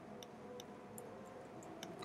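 Faint, sparse clicking of computer keyboard keys, about five light clicks over two seconds.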